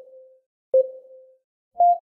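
Short electronic beeps about a second apart, each starting with a click and fading quickly. Two are at the same pitch and a third, near the end, is higher.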